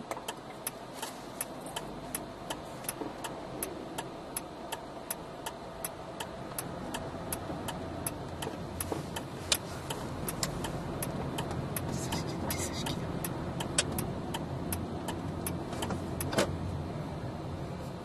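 Turn-signal indicator ticking steadily inside a car as it turns through an intersection, stopping about a second and a half before the end. Under it the car's engine and road noise grow louder as it pulls away.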